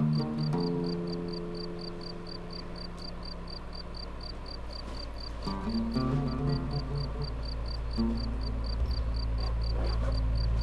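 Steady insect chirping, about three short chirps a second, over sustained low notes of background music that come in at the start, shift in pitch twice and swell near the end.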